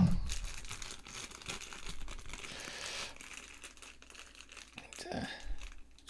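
Packet of incense cones crinkling and rustling as it is handled and opened by hand, in a run of small irregular crackles.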